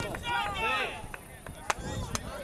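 Distant shouting voices across an open soccer field, several calls overlapping, with a few sharp knocks among them, the loudest about two-thirds of the way through.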